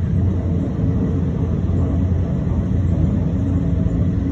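Steady low rumble of a passenger train running along the line, heard from inside the carriage.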